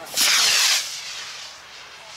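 Solid-fuel model rocket motor firing: a loud, harsh hiss lasting about half a second, then fading to a softer hiss.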